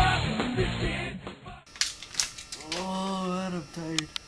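Rock music that cuts off suddenly about one and a half seconds in. After it come a few sharp clicks and knocks and then one drawn-out vocal cry from a man, lasting about a second, from someone who has just snorted black pepper.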